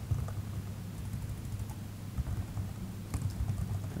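Typing on a computer keyboard: irregular key clicks, in small runs, over a steady low hum.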